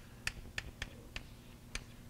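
Sharp clicks, about six at uneven spacing over two seconds, over a faint steady room hum.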